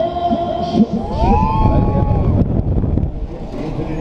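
Wind rushing over an onride microphone as a free-fall tower's seats drop, with voices and pitched sounds over it, among them a rising call about a second in.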